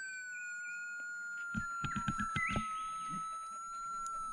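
QED pulse-induction metal detector's threshold tone, a steady electronic hum that sags slightly in pitch, with a few soft knocks about halfway through. The ground balance, just set to 200, is still a little out, so the threshold is not yet settled.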